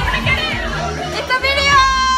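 Several young women shouting and squealing excitedly at once, over background music. Near the end one voice holds a long, high, steady note.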